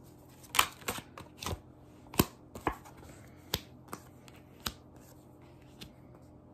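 Tarot cards being laid out one at a time onto a table for a spread: a series of sharp card snaps and taps, about a dozen, at irregular intervals.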